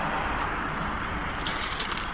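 Steady hissing background noise, with a few faint ticks near the end.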